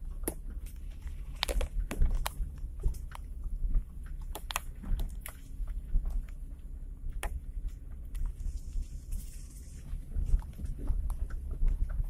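Vehicle cabin sound while driving slowly over a rough dirt track: a steady low rumble with irregular clicks, knocks and rattles as the vehicle bumps along.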